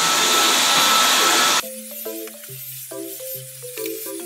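Cordless stick vacuum cleaner running with a steady whine, cut off suddenly about one and a half seconds in; background music follows.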